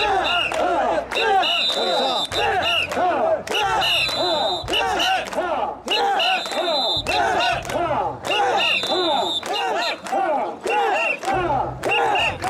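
Crowd of mikoshi bearers chanting in unison as they carry and bounce a portable shrine, a rhythm of short, loud shouts one after another. A high steady tone comes back every two to three seconds above the voices.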